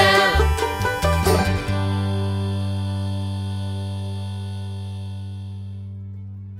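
Bluegrass band of acoustic guitar, mandolin, banjo and bass playing the last bars of a song, ending on a final chord about two seconds in that rings on with a strong low bass note and slowly fades.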